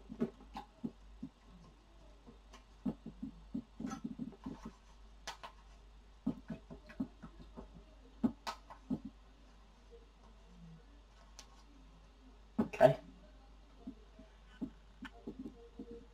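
Paintbrush being rinsed in a water pot: scattered light clicks and knocks of the brush against the pot, with one louder knock late on.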